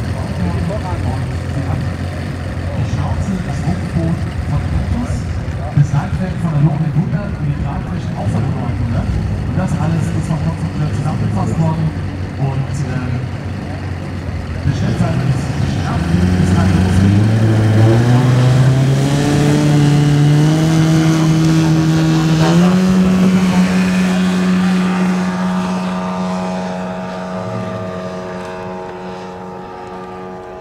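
Engine of a large-scale RC Super Decathlon tow plane running low at first, then opening up: its pitch climbs in steps from about halfway as it takes off towing a glider. It then holds a steady full-throttle note and fades as the plane climbs away.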